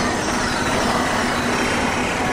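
Experimental electronic noise music: a dense, unbroken wash of synthesizer noise with a steady low hum under it, engine-like in character.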